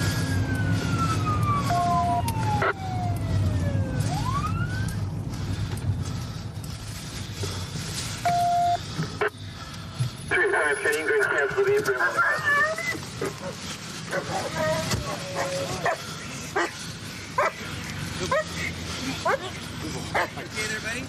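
Police car siren wailing in one long falling sweep and then rising again, cutting off about five seconds in, over the patrol car's engine. About ten seconds in, officers' voices are loud at the arrest scene, followed by short sharp calls.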